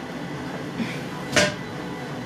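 A single sharp knock about one and a half seconds in, from an eyeshadow palette that has just been dropped, over low room noise.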